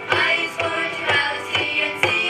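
Group of children singing a song with a steady drum beat, about two beats a second.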